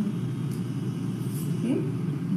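Hot chai pouring in a steady stream from a stainless steel saucepan through a metal tea strainer into a ceramic mug.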